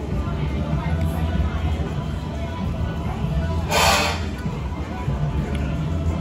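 Dining-area background: a steady low hum with faint music and distant voices, and one short hiss a little under four seconds in.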